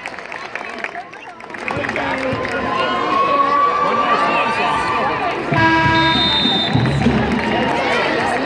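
Basketball arena crowd chatter during a free throw, getting louder about two seconds in. About six seconds in, a buzzer-like horn sounds for about a second.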